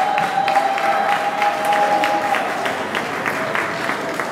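Audience applauding in a hall, many quick claps, with a single long held tone over the first two seconds.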